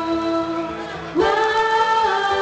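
A girl singing into a microphone with musical accompaniment: a held note fades, then about a second in a new note slides up into pitch and is held.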